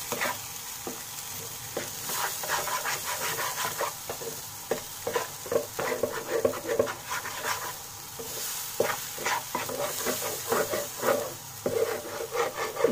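Spiced green-pea paste sizzling in hot oil in a pan while a spatula stirs and scrapes it in repeated quick strokes; the paste is being fried until it turns dry.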